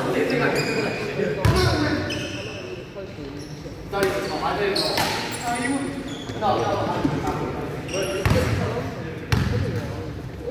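A basketball bouncing on a wooden sports-hall floor in a pickup game, a handful of separate bounces that echo in the large hall, with players' indistinct voices.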